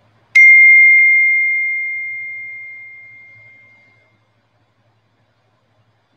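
A meditation bell struck once, giving a single clear high tone that rings out and fades away over about four seconds. It marks the start of the sitting meditation.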